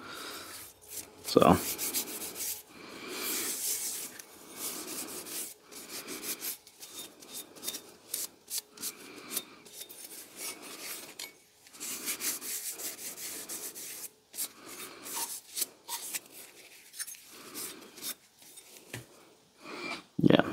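An oily cloth rag rubbed over a steel Plumb National axe head in a run of irregular wiping strokes, working oil into the metal.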